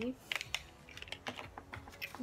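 Light, irregular clicks and taps of small cosmetic packaging being handled in a cardboard subscription box.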